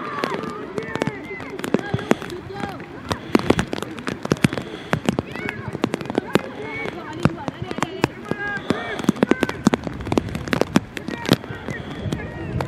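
Several young rugby players' voices shouting and calling out over one another on the pitch, with frequent sharp clicks and taps scattered throughout.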